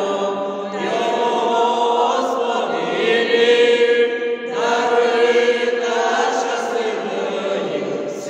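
Small mixed vocal ensemble of women's and men's voices singing a Ukrainian Christmas carol (koliadka) in harmony, with long held notes.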